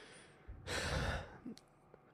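A man sighing close to the microphone: a faint breath, then a fuller breath out about half a second in lasting under a second.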